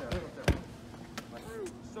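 A soccer ball being kicked: one sharp thud about half a second in, with a lighter tap a little after a second.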